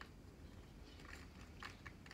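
A cat chewing dry kibble: a run of faint, quick crunches, bunched in the second half.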